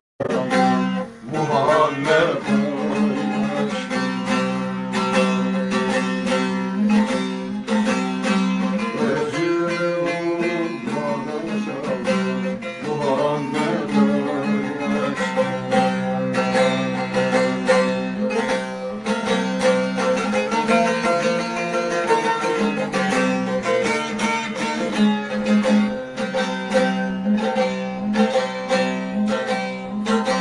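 Bağlama (saz), a Turkish long-necked lute, played solo: a busy picked melody over a steady ringing drone from the open strings, forming the instrumental passage between sung verses of a Turkish folk song. The sound drops out for a moment at the very start.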